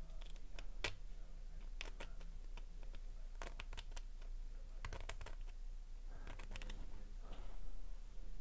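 Faint, scattered clicks and scratches of a thin hand tool working against a tiny circuit board and its frame held in the fingers, over a steady low hum.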